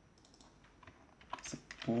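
Typing on a computer keyboard: a quick run of separate key clicks.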